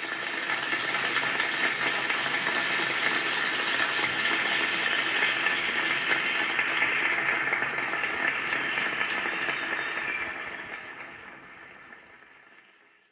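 Applause from an audience, a dense steady patter of many hands clapping that swells in at the start and fades away over the last couple of seconds.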